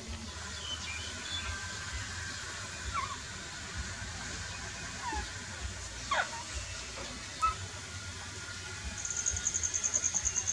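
A few faint, short, falling squeaks or chirps over a steady background hiss. A rapid high-pitched trill starts near the end.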